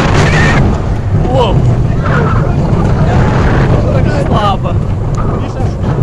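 Roller coaster train running along its track, a dense low noise with wind buffeting the phone's microphone. Riders' voices call out briefly several times over it.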